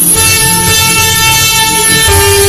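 Alto saxophone holding one long, steady note over a backing track.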